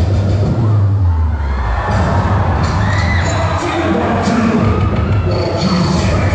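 Dance music with a heavy bass beat, joined about two seconds in by a crowd cheering and shouting over it.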